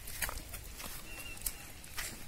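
Footsteps crunching on a stony dirt path, a step roughly every half second to second. A short faint high note sounds near the middle.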